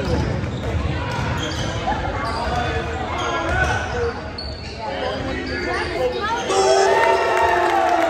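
A basketball dribbling on a hardwood gym floor during live play, under the voices and shouts of players and spectators, which grow louder near the end.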